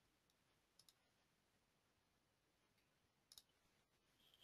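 Near silence, broken by a few faint, short clicks: a close pair about a second in and another pair near the end.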